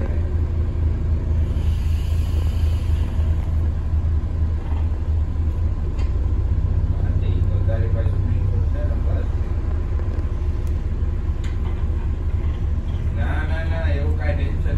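Steady low rumble of an Alexander Dennis Enviro400 MMC double-decker bus under way, engine and road noise heard from inside the passenger saloon. Faint voices come through about eight seconds in and again near the end.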